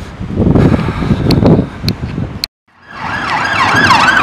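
Rumbling road-traffic noise, then a short dropout and an emergency vehicle's siren starting up, its wail sweeping quickly up and down several times a second.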